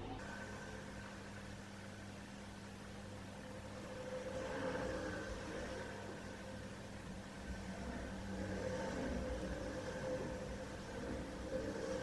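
Faint steady mechanical hum with a low drone, swelling a little twice, about four and nine seconds in.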